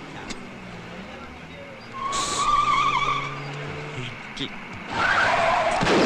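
Vehicle tyres squealing in a skid about two seconds in, over engine noise, followed by a louder rush of noise near the end.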